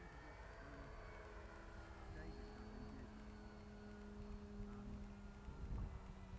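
Faint steady hum of a small RC glider's electric motor and three-blade pusher propeller in flight, growing louder about two seconds in as the throttle is opened.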